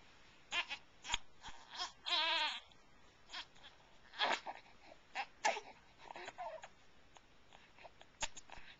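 Newborn baby fussing with short whimpers and one longer wavering cry about two seconds in: a hungry baby's complaint, fretting while sucking on an offered finger.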